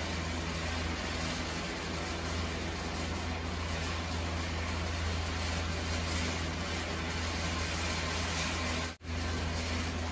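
Steady hiss over a low hum as vermicelli and vegetables are stir-fried in a pan on a gas stove. The sound drops out for an instant about nine seconds in.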